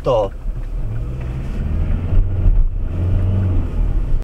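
Car engine and road noise heard inside the cabin while driving, a steady low drone that grows stronger about a second and a half in.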